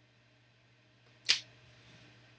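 A single sharp click about a second in: a trading card in a clear plastic holder set down on a tabletop. A faint steady low hum runs underneath.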